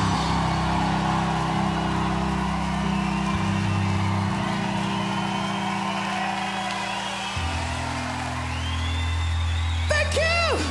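Live rock band letting held low notes ring out, the pitch shifting twice, while a concert crowd cheers and whoops over them.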